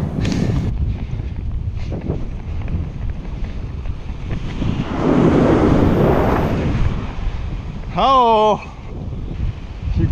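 Wind buffeting the microphone over the rush of ocean surf, with a wave washing in louder for about two seconds midway. A short shouted call comes near the end.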